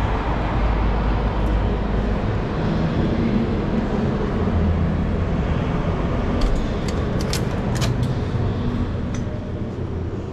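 A steady, loud low rumble with a few sharp clicks about six and a half to eight seconds in.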